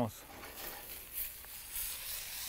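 Brussels sprouts sizzling faintly in an oiled frying pan over a wood fire, a soft, steady hiss of pan-frying.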